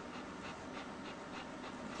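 Faint panting from a German shepherd bitch in the middle of whelping, over a steady hiss.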